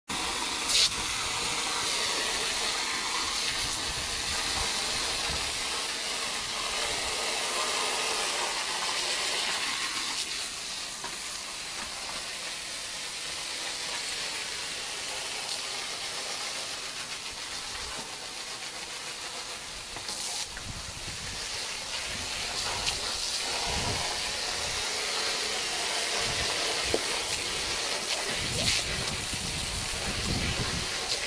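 Garden hose spraying a jet of water onto artificial turf: a steady hiss throughout. A dog snapping at the stream adds a few short thumps and clicks in the second half.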